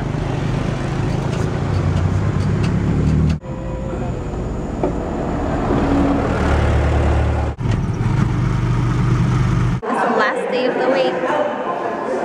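Low, steady rumble of vehicle engines and street traffic, broken off abruptly twice. Near the end it gives way suddenly to indistinct voices in a large room.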